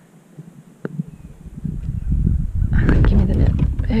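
A hooked bass thrashing and splashing at the surface beside a kayak as it is reeled in and netted. Under it, a rumbling handling noise on the camera microphone builds from about a second in.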